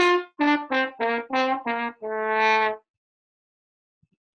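Trombone playing a quick run of separate notes and ending on one longer held note that stops nearly three seconds in, heard over a video-call connection.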